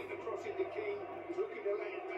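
A live football broadcast playing faintly on a television: a commentator's voice over a steady background of match noise.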